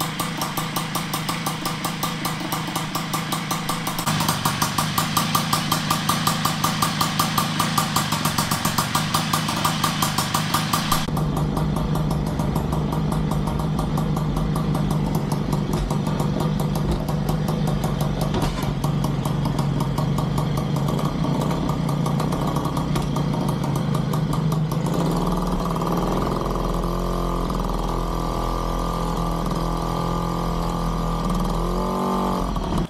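Small two-stroke engine of a Puch-built vintage Sears moped idling as it warms up, a rapid even beat that gets louder about four seconds in as it is given a little throttle. About a third of the way in the sound changes abruptly to a lower, more muffled running with a rumble, and near the end the engine note shifts as the moped moves off.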